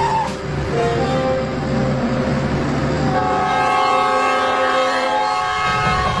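A train horn sounds long, held tones over the low rumble of a moving train. The horn is strongest in the second half.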